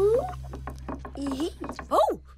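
Cartoon sound effects over a steady low music drone: a rising whistle-like glide just at the start, quick mechanical ratchet-like clicking, and a short swooping up-and-down glide near the end.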